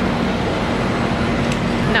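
City street traffic: a steady wash of road noise with a steady low engine hum from a double-decker bus close by.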